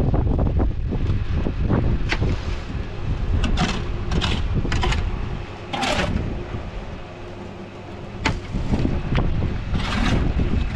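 Wind buffeting the microphone with an uneven low rumble that eases for a couple of seconds past the middle, overlaid by about six short, sharp noises from building work, the longest about six seconds in.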